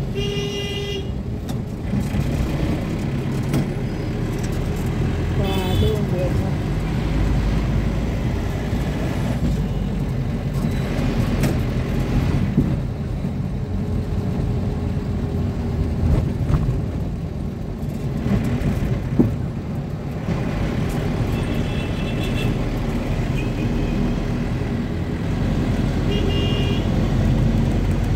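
Engine and road noise of a moving vehicle, a steady low rumble, with a few short car horn honks from traffic, two of them near the end.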